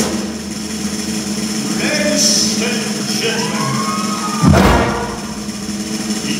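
Live high school marching band on a concert stage, with drums and percussion prominent, and a loud deep drum hit about four and a half seconds in.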